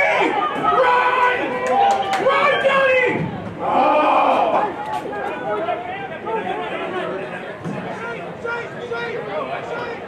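Several voices shouting during open play in a rugby sevens match. There are loud calls in the first half, one of them about four seconds in, then quieter scattered shouts and chatter.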